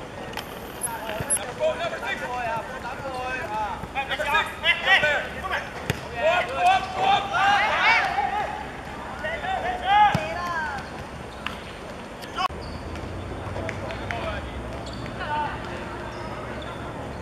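Men's voices shouting across a football pitch during play, loudest from about four to eleven seconds in, with a few sharp thuds of the ball being kicked.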